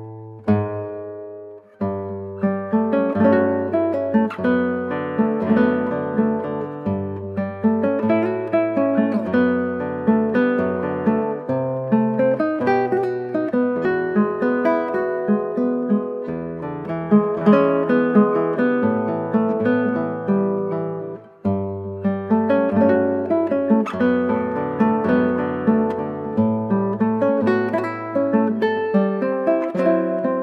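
Solo nylon-string classical guitar playing a Brazilian piece: a chord rings out at the start, then a steady flow of plucked melody and chords over bass notes, with a brief break about two-thirds of the way through before the playing picks up again.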